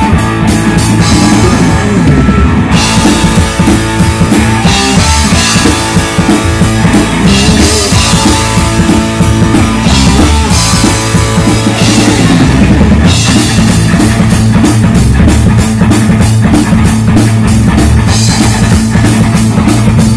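Live instrumental rock jam on drum kit, electric guitar and bass guitar, played loud and steady. The cymbals drop out twice for a couple of seconds, about a second in and again around the ten-second mark.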